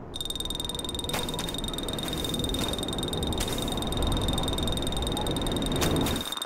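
Cartoon sound effects: a croaking, rasping buzz under a steady high whine, broken by a few sharp clicks.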